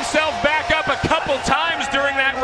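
Men's voices talking, with several short knocks through it.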